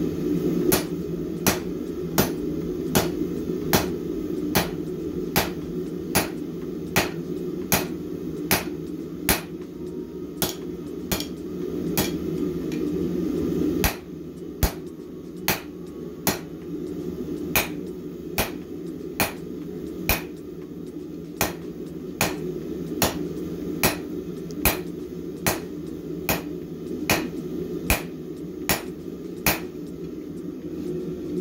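Hand hammer striking red-hot steel bar stock on an anvil at a steady pace of about three blows every two seconds, forging a stepped set-down over the anvil edge for the jaw of a pair of tongs. The blows pause briefly about halfway through, then carry on.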